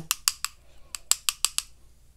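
Quick, sharp taps of one paintbrush knocked against the handle of another, about five or six a second, flicking watercolour splatter onto the paper; the tapping stops about one and a half seconds in.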